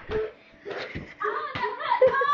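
Young children's voices and laughter, high-pitched toward the end, with a couple of soft thumps as they tumble on a couch.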